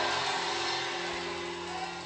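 Soft, sustained keyboard chord held under the pause, slowly fading, with the echo of the preceding spoken words dying away at the start.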